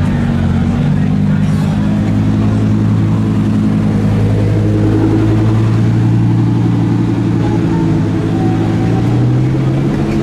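Lamborghini Huracán Performante's naturally aspirated V10 running at low revs as the car rolls past at walking pace: a steady deep engine drone whose pitch rises slightly near the end.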